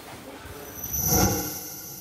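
News-bulletin transition sound effect: a whoosh that swells to a peak about a second in, with a high steady ringing tone over a low rumble, then fades out.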